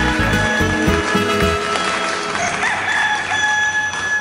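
Music of a children's song stops about a second and a half in, then a rooster crows.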